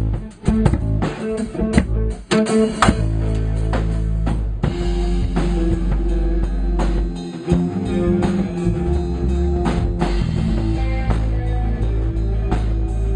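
Electric guitar played loud through a Marshall amplifier in a rock jam, with drums and a deep sustained bass line underneath.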